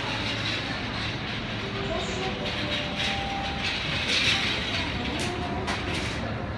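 Department-store escalator running, a steady mechanical noise of the moving steps, with two sharp clicks near the end.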